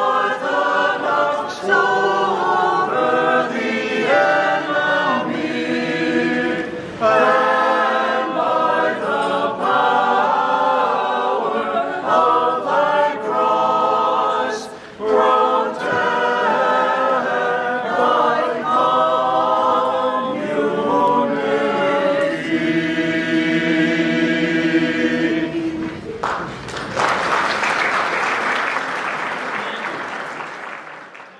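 A small mixed group of men and women singing a cappella in parts, ending on a long held chord. Applause breaks out near the end.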